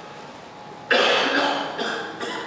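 A man coughing close into a handheld microphone: one loud cough about a second in, then a smaller one near the end.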